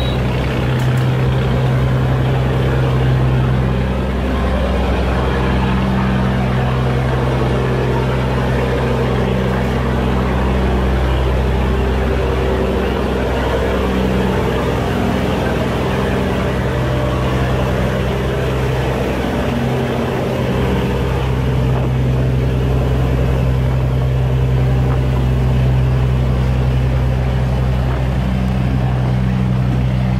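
A boat engine running steadily at close range, a low even hum that holds for the whole stretch, with water churning.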